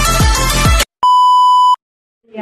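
Electronic intro music with a heavy beat cuts off abruptly just under a second in. A brief gap follows, then a single loud, steady electronic beep lasting under a second.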